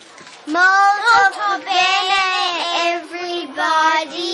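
A young girl's voice singing a short tune with long held notes, starting about half a second in.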